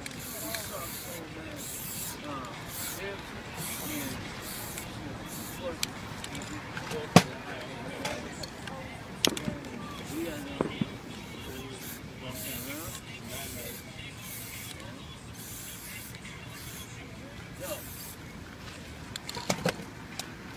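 Aerosol spray-paint cans hissing in short bursts, roughly one a second, as a spray-paint picture is worked, stopping a few seconds before the end. A few sharp knocks cut in, the loudest about seven seconds in.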